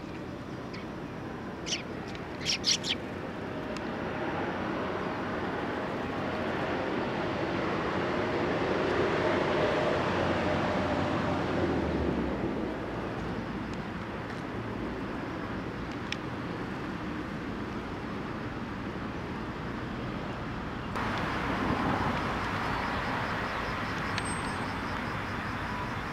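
Road traffic going by, swelling and fading twice. About two seconds in there is a quick run of short, high Eurasian tree sparrow chirps.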